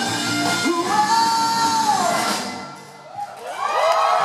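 Live rock band with drums, electric guitars and violin ending a song: a long high note is held and then falls away, and the music dies down about two and a half seconds in. Shouts and cheering from the audience rise near the end.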